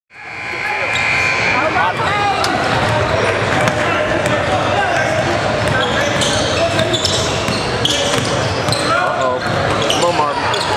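A live basketball game in a gym: the ball dribbling on the court with repeated knocks, under the voices of players and spectators. The sound fades up from silence at the start.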